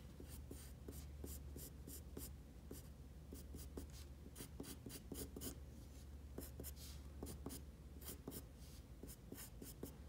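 Graphite pencil scratching on paper in quick, short sketching strokes, several a second in runs with brief pauses between them, faint.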